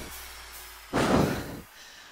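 A woman's hard exhale into a close headset microphone about a second in, a short breathy rush while she strains through dumbbell tricep extensions.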